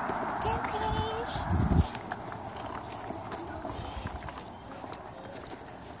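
Footsteps on a concrete sidewalk, a run of light regular steps, with brief snatches of voices.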